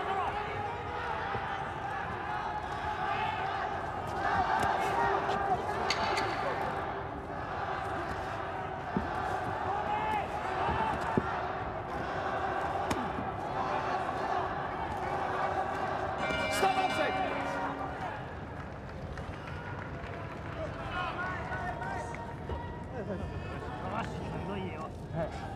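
Arena crowd shouting and cheering during a boxing round, with thuds of gloved punches landing. About two-thirds of the way through, a ring bell sounds briefly, marking the end of the round.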